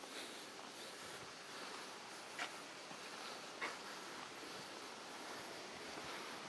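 Faint, steady outdoor background hiss, with two soft ticks a little over a second apart near the middle.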